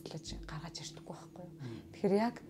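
Soft, quiet speech, partly whispered, with a brief low rumble about a third of a second in.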